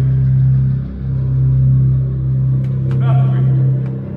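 A loud, steady low rumbling drone from the theatre's sound system, dipping briefly about a second in, with faint voices near the end.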